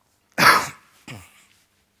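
A man coughing twice, the first cough loud and sharp, the second shorter and weaker.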